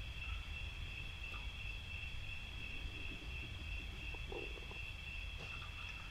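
Crickets trilling faintly and steadily, one unbroken high tone, over a low background rumble.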